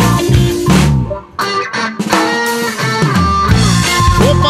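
Reggae band playing live: an instrumental passage between vocal lines, with electric guitar over bass and drums. The band cuts out briefly about a second in, then comes back in.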